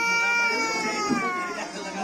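A toddler crying: one long held cry lasting about a second and a half, its pitch falling slightly before it fades.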